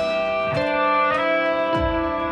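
Instrumental music led by electric guitar: a slow line of ringing, sustained notes, a new note about every half second.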